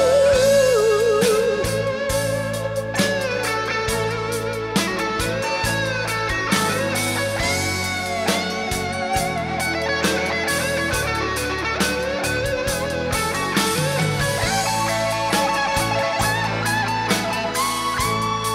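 Electric guitar solo with bent and sustained notes over the band's bass and drums. A held sung note with wide vibrato trails off in the first second or so.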